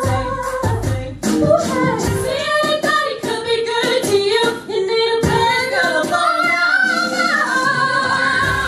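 Amplified show choir singing a pop arrangement, mostly female voices in layered harmony through handheld microphones, over a low pulsing beat with no visible instruments.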